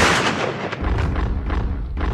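A gunshot's echo dying away over the first half second, then a steady low rumble underneath.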